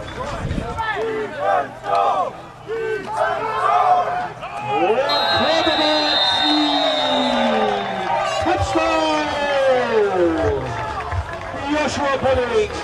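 Many voices shouting and cheering at once, overlapping, as football players celebrate a play in the end zone. A steady high tone sounds for a couple of seconds about five seconds in.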